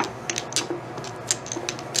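Domino tiles clicking against each other as hands slide and gather them on the table: a few scattered, irregular clicks.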